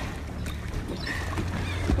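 Boat engine idling with a steady low hum, under the wash of water against the hull.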